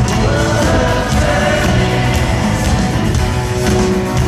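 Live rock band playing, with sung vocals over drums, bass and guitars, recorded from the audience in a large arena.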